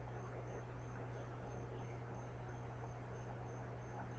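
Steady low hum and hiss of a poor-quality microphone's background noise, with a faint high-pitched chirp repeating about three times a second.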